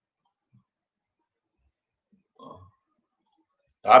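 A few faint, sharp computer clicks, in small pairs, as a text label is entered on screen, with a short low murmur midway. A man starts speaking at the very end.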